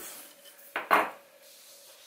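A sheet of paper handled on a wooden tabletop: two short, sharp handling sounds close together about a second in, the second louder, then quiet with a faint steady hum.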